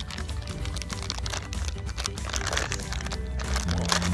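Plastic candy wrapper crackling and crinkling as it is torn open by hand, over background music.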